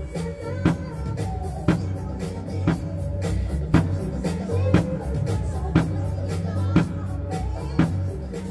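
Drum kit playing a steady beat: a loud snare stroke about once a second over bass-drum kicks from the foot pedal, along with a backing music track.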